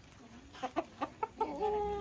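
Chickens clucking: a handful of short clucks, then one longer drawn-out call near the end.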